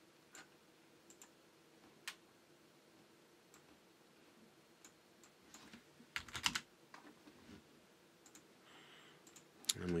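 Scattered clicks of a computer mouse and keyboard, with a quick run of several keystrokes a little past halfway.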